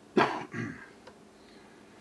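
Two short, sharp vocal calls near the start, about a third of a second apart, the first the loudest, then quiet.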